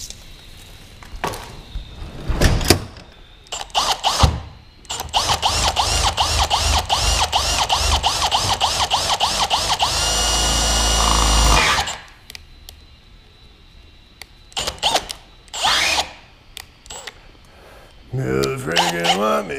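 Handheld cordless drill working into a truck's cab roof. From about five seconds in it runs in a long stretch of rapid, even pulsing, then in a steady whine for under two seconds. Sharp knocks and handling clatter come before and after.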